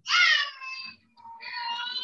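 Two high-pitched, drawn-out cries: the first lasts about a second, and the second begins just after it and wavers up and down as it goes on.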